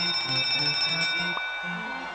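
Online slot game's bonus-trigger sound: a bright bell-like chime that starts suddenly and fades away over about a second and a half, over a short tune of low repeating notes.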